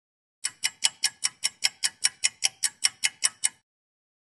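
A fast clock-ticking sound effect: sixteen even, sharp ticks at about five a second, starting about half a second in and stopping just before the end.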